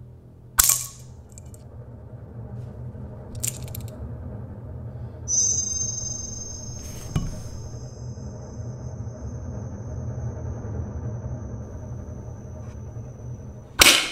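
Tense background music with a low drone and a long high held note. Over it, a miniature spring-loaded wire mouse trap snaps shut with a sharp click about half a second in and again at the very end, with fainter clicks in between.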